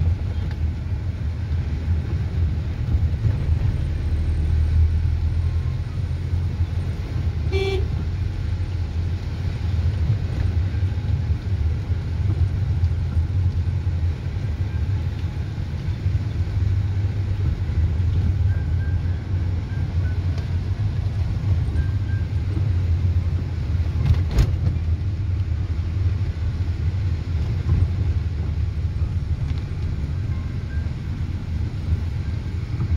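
Steady low rumble of a car's engine and tyres heard from inside the cabin of a moving taxi, with one short car-horn toot about eight seconds in and a single sharp click about two-thirds of the way through.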